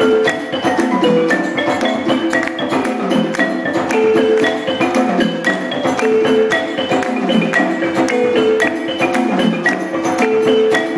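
West African percussion ensemble playing live: a balafon (wooden xylophone) plays a repeating melodic figure over djembe and dundun drums in a steady, dense rhythm.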